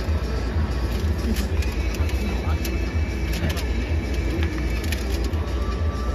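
Ballpark crowd chatter from the stands over music from the stadium speakers and a steady low rumble, with a few sharp clicks in the first half.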